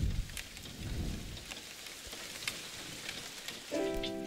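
Steady rain with scattered drops tapping, under a deep low rumble that fades away during the first second. Soft music with held notes comes in near the end.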